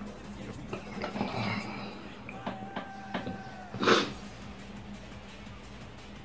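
Soft background music, with a man's single short, sharp burst of breath about four seconds in as he reels from the heat of a habanero pepper.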